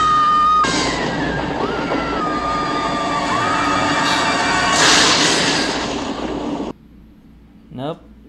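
A woman screaming in long, held shrieks one after another, each jumping up in pitch and then holding, with music under them. A louder, harsher burst comes about five seconds in, then the sound cuts off suddenly about a second before the end.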